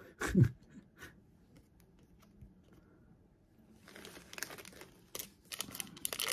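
A trading-card pack's wrapper crinkling and being torn open, starting about four seconds in after a near-quiet stretch of faint card-handling clicks.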